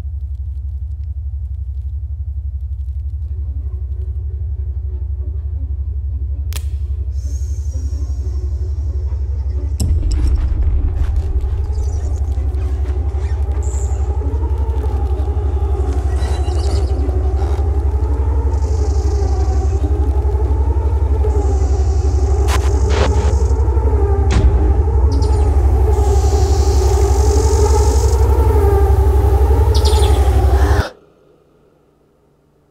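Horror film soundtrack: a deep rumbling drone that slowly swells. About ten seconds in, wavering sustained tones and scattered glitchy clicks join it, and the whole keeps building in loudness.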